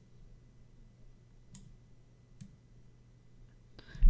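Two faint clicks of a computer mouse, about a second apart, over a low steady hum of room tone.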